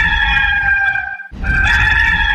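A rooster crowing twice, back to back, each crow a long held call. The first ends about a second in and the second starts right after.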